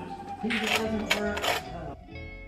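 A squeeze bottle of hot sauce spluttering as it is squirted onto food: three short, sudden spurts over background music.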